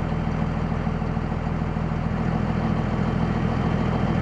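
2001 Dodge Ram's 5.9-litre Cummins inline-six turbo diesel idling steadily, warmed up, at just under 1000 rpm, heard from the cab. It runs evenly, with no sign of a miss.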